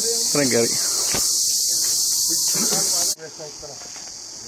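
A loud, steady, high-pitched insect chorus that cuts off suddenly about three seconds in, leaving only a much fainter insect hiss.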